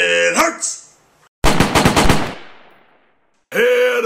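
Burst of machine-gun fire, about ten rapid shots in under a second, with an echo that fades away.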